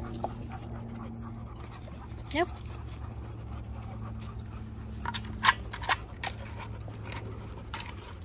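A dog playing with a large hard egg-shaped toy ball, knocking and biting it: a few sharp knocks come in a quick cluster a little after the middle, over a steady low hum.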